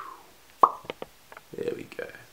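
A single sharp mouth pop made with pursed lips, with a brief falling tone, a little over half a second in, followed by a few faint light clicks. Short vocal sounds sit either side of it.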